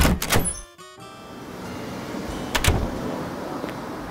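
Door-closing sound effect: a quick cluster of knocks and clicks in the first second as a door is shut and locked up. It is followed by a steady background hiss of outdoor ambience, with one sharp knock a little past halfway.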